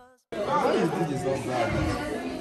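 Background music fading out, then after a brief silence, many students talking at once in a large classroom, a steady babble of chatter.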